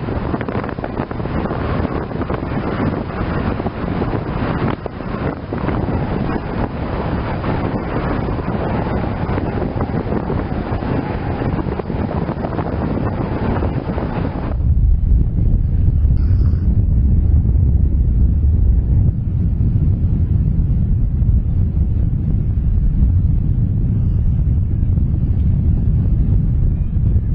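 Wind on the camera microphone. A steady rushing noise changes abruptly about halfway through into a deep, gusting rumble of wind buffeting the microphone.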